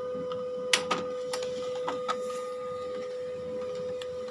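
HP LaserJet M1005 MFP laser printer running a copy job and feeding a sheet through: a steady motor whine with several sharp mechanical clicks in the first two seconds, the loudest about three quarters of a second in.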